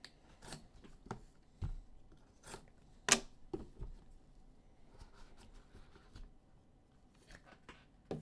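A box cutter slitting the seal on a cardboard box, then the lid being worked off by hand: a series of short sharp clicks and scrapes, the loudest about three seconds in, with faint rustling later.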